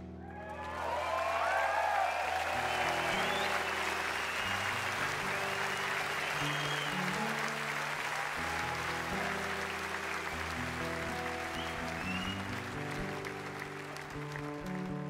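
A large concert crowd applauding and cheering, with whistles, over ringing acoustic guitar notes. The applause builds right away and thins out near the end as the guitars play on.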